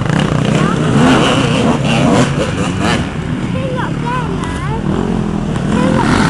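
Off-road enduro motorcycles riding along a dirt track, their engines running and revving as they pass.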